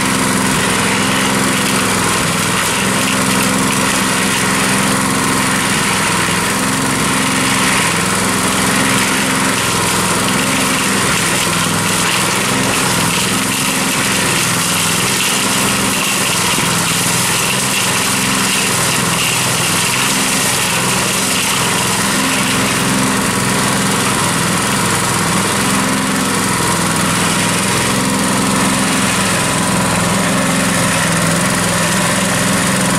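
Small engine of a portable cement mixer running steadily, turning the drum with a load of concrete mix.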